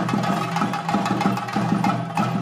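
Chenda drums beaten fast with sticks in a dense, continuous stream of strokes, the traditional percussion accompanying a Theyyam dance, with a steady ringing tone held above the drumming.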